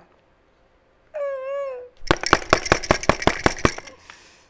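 A short wavering hum like a thinking 'hmm', then a quick run of sharp scratchy strokes, about eight a second for two seconds: a marker writing on an answer board.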